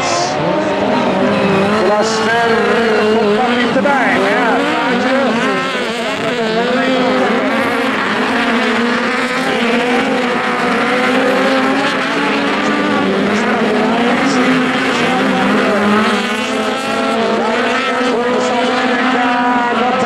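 Several Volkswagen Beetle-based autocross cars with air-cooled flat-four engines racing together on dirt. Their engines rev up and down continually, the pitches of the different cars rising and falling over one another.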